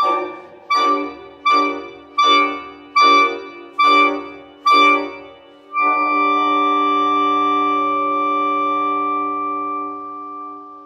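Clarinet with live electronics: seven short, accented chords about three quarters of a second apart, each dying away. Then, about six seconds in, a long held chord of several pitches that is starting to fade at the end.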